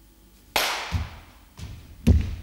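Feet stamping on a wooden studio floor: a sharp hit about half a second in, then two duller thuds.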